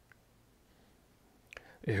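Near silence: quiet room tone during a pause in reading aloud. Near the end come a couple of faint mouth clicks, and then a voice starts speaking.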